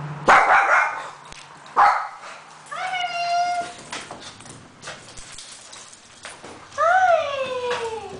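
Small pet dogs, a papillon and a shih tzu, yipping and whining with excitement at their owner's return. Two short sharp yips come in the first two seconds, then a high whine held for about a second, and near the end a long whine that falls in pitch.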